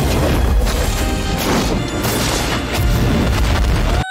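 Anime film soundtrack: a run of loud booming crashes mixed with music, the sound effects of a flame sword attack striking through a train.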